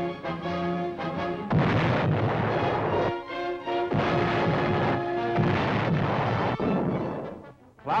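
Battleship 16-inch guns firing salvos over newsreel music: held musical notes, then a sudden loud blast about a second and a half in and another about four seconds in, with heavy rumbling between and after them.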